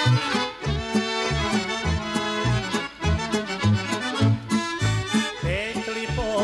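Instrumental passage of a 1977 Serbian folk song, played by an accordion-led folk ensemble over a steady bass beat. A wavering vibrato melody line comes in near the end.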